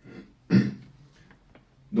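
A man clears his throat once, sharply, about half a second in, after a softer short sound just before it.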